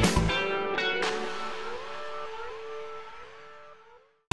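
The show's bumper theme music. A drum beat stops just after the start, leaving a melody with sliding notes that fades out toward the end.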